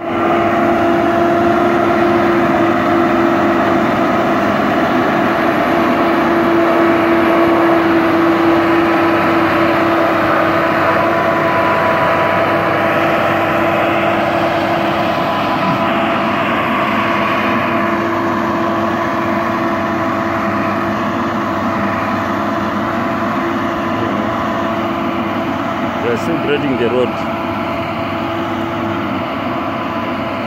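Shantui motor grader's diesel engine running at a steady speed close by as it grades a dirt road, a loud drone holding one pitch. A voice rises briefly over it near the end.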